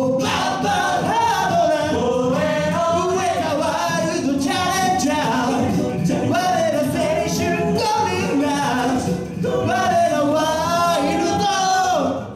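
A male a cappella group singing into handheld microphones: a lead vocal line over sung backing harmonies, with no instruments.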